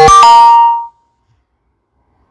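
A short electronic chime from the phone's messaging app as a chat message is sent. It starts suddenly, loud, and rings for under a second before fading.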